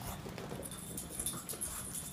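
Pug trotting on a tile floor, its claws giving a few light, irregular clicks.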